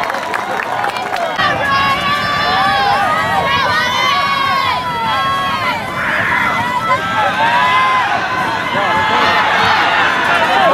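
Football crowd and sideline voices shouting and cheering together, with many overlapping yells throughout.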